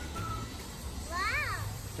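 A person's voice exclaiming one drawn-out "wow" about a second in, its pitch rising then falling, over a low steady rumble.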